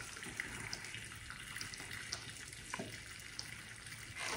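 Hot water pouring steadily from a water dispenser's spout into a small metal frying pan.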